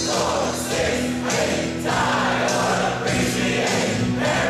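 A choir of men and women singing with musical backing, at a steady, fairly loud level.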